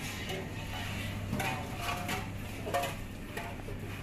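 Steady low hum and hiss of a gas burner just lit under a large pot of dal and rajma in water.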